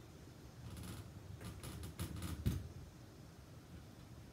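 Handling noise from hands working a paint tube on paper: a run of light clicks and taps, ending in a louder soft thump about two and a half seconds in.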